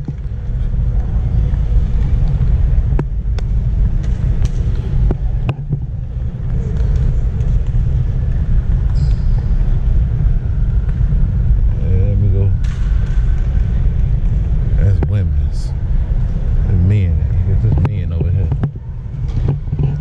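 Steady low rumble, with snatches of voices and a few light clicks.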